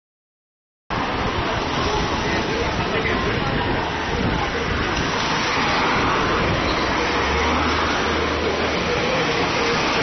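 Busy city street ambience: cars passing close by over a steady wash of crowd voices, starting after about a second of silence.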